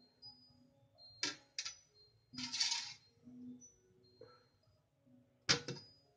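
Ceramic cups clinking and scraping against a stainless-steel steamer as they are set into it: two clinks a little over a second in, a short scrape near the middle, and a sharper knock near the end, over faint background music.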